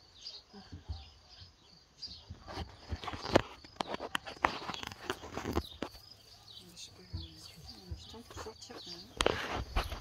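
Small birds chirping steadily in the background. Bursts of irregular rustling and knocks from movement close by come from about two to six seconds in and again near the end.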